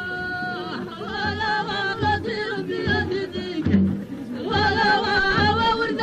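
Men's voices singing an Amazigh folk song together in a wavering, ornamented line over a low drum beat about twice a second. A long held note breaks off under a second in, and the singing pauses briefly about four seconds in before resuming.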